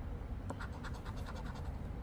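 Scratch-off lottery ticket being scratched with the edge of a casino chip, a soft scraping in a run of short, quick strokes as the latex coating comes off.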